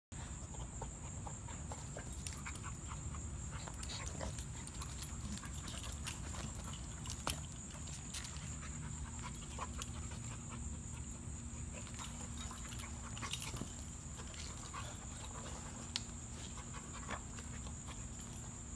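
Two dogs play-wrestling on grass: panting and scuffling, with a few sharp knocks along the way. A steady high insect drone runs underneath.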